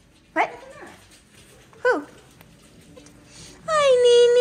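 Small dog giving two short, high yelps that fall in pitch, about a second and a half apart, then starting a long, steady whine near the end.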